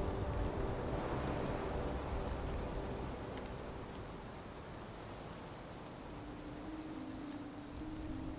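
Stormy weather ambience: a steady rushing noise, like wind and rain, that eases a little after the midpoint. A low held tone comes in about six seconds in.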